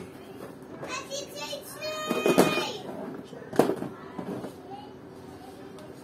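Children's voices in the background, with a sharp knock about three and a half seconds in from a microphone and its cable connector being handled.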